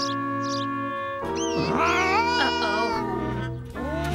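Cartoon cat's long, wavering meow over background music. The cry starts about a second in and lasts about two seconds, rising and falling in pitch.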